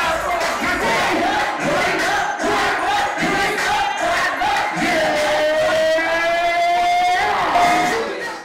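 Nightclub crowd shouting and singing along over loud music, with one long held note rising slightly through the second half.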